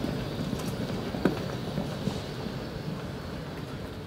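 Footsteps of people walking past on pavement over outdoor background noise, with one sharp click a little over a second in.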